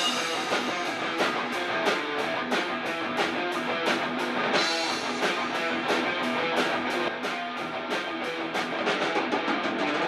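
Live rock band playing an instrumental passage: two electric guitars and a bass guitar over a drum kit keeping a steady, fast beat.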